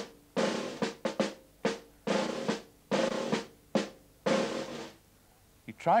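A toy drum beaten with two sticks in a slow, uneven rhythm of single strokes and short rolls, each ringing briefly. It stops about a second before the end.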